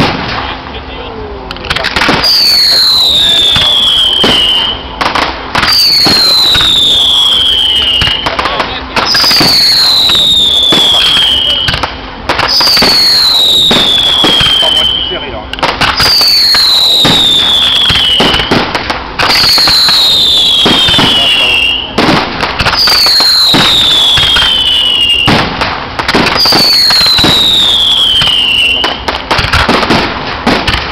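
Fireworks display: steady bangs and crackling, with a loud falling whistle that repeats about every three and a half seconds, eight times in all.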